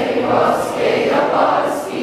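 A large group of schoolchildren singing together.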